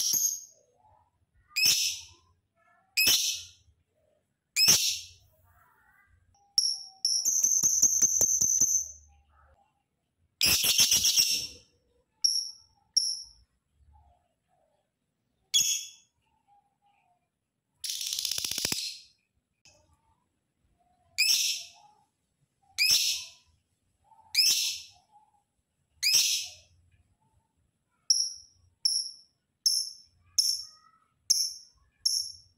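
Lovebird calling: single high-pitched shrill calls about every second and a half, broken by longer runs of rapid chattering about 8, 11 and 18 seconds in. Near the end come quick, closely spaced short chirps.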